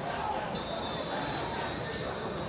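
Scattered voices and chatter of players, coaches and onlookers around a football practice field, over a general outdoor hubbub. A thin, steady high tone runs through the second half.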